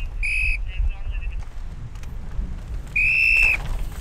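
Trackside whistles blown at a downhill mountain-bike race: a short shrill blast about a quarter second in, a few quick trilling toots, then a longer, louder blast about three seconds in, over a low rumble.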